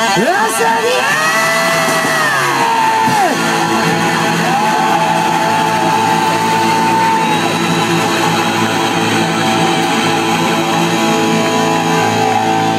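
Live heavy metal band playing loud, with electric guitar. There are long held notes that slide up and down in pitch in the first few seconds, then another long held note in the middle.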